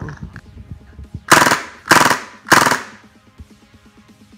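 CO2-powered gas blowback airsoft submachine gun firing three short full-auto bursts, each about half a second long, spaced about half a second apart.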